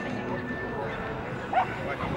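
A dog gives a single short bark about a second and a half in, over background chatter of people.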